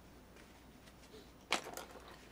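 Faint room tone, then about one and a half seconds in a brief clatter of several light clicks from a small hard object.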